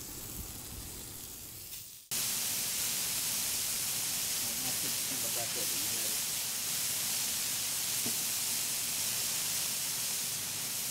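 Raw beef burger patties sizzling on a flat-top griddle in hot bacon grease: a steady frying hiss that jumps louder about two seconds in.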